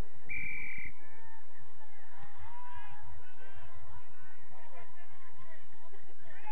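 A referee's whistle gives one short blast near the start, over many distant voices shouting across the field.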